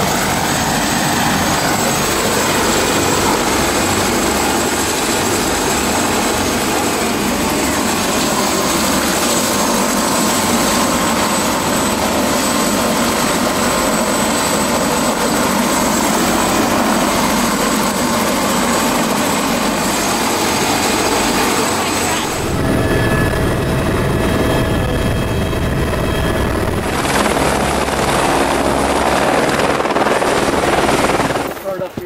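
Helicopter running close by: turbine whine over heavy rotor noise, steady and loud. About three-quarters of the way through the sound changes abruptly to a deeper, heavier rotor rumble with less whine, then brightens again near the end.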